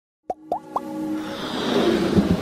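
Logo sting music: three quick pops that each sweep upward in pitch, followed by a swelling synthesised rise.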